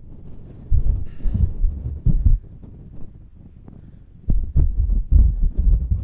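Wind gusts buffeting the camera microphone: low, uneven rumbles that come and go, with the longest stretch of gusting in the last couple of seconds.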